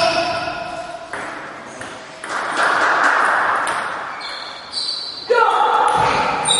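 Table tennis balls clicking off paddles and tables in a large hall, mixed with voices; a loud voice cuts in suddenly about five seconds in.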